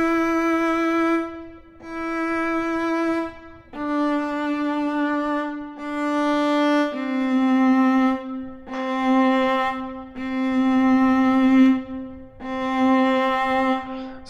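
Amati viola from Native Instruments' Cremona Quartet sample library playing a run of sustained bowed notes, each held one to two seconds. The pitch steps down twice, with the notes repeated at each pitch, demonstrating the forced open-string articulation against playing in position.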